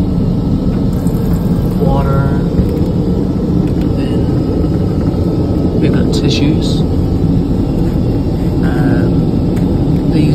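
Steady low rumble of an airliner's cabin noise in cruise: engine and airflow noise heard inside the small lavatory. About six seconds in, a paper towel is pulled from the dispenser with a brief rustle.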